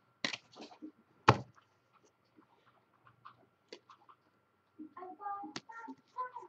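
Trading cards and packs being handled on a tabletop: one sharp click a little over a second in, then scattered soft ticks and rustles. A faint pitched, voice-like sound comes in near the end.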